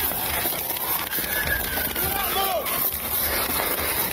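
A police body-worn camera jostling as the officer runs through brush, with rustling undergrowth and footfalls. Over it come drawn-out shouted voices, a long call rising then falling in pitch near the middle.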